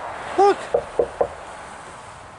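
Three quick knocks on wood, evenly spaced about a quarter of a second apart.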